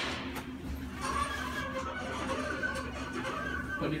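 Fujitec traction elevator car travelling up, with a click at the start and then a steady running noise carrying a wavering high-pitched squeal, a little noisy: the uploader thinks it could use some lubrication.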